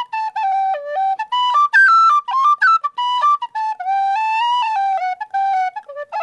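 An inexpensive mass-produced Clarke Sweetone tin whistle playing a quick traditional tune of short, clearly separated notes with fast grace-note flicks, one longer note about two thirds of the way through: the classic tin whistle sound.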